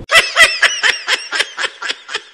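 High-pitched giggling laugh in quick, even bursts, about four a second, with the room sound cut out behind it: a laugh sound effect laid over the picture.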